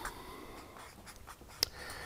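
Felt-tip marker writing on flip-chart paper, a soft, uneven scratching of short pen strokes, with one sharp click late on.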